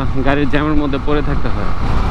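A man talking over a steady low rumble of wind and motorcycle noise while riding.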